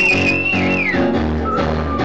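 Live keyboard music on a digital stage piano, sustained chords played through a PA. In the first second a high note slides up, holds and falls away.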